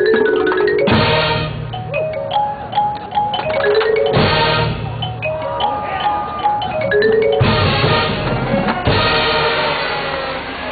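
High school marching band playing its field show: pitched mallet-percussion lines from the front ensemble run throughout. Three loud full-ensemble hits come about a second in, around four seconds in, and a little after seven seconds.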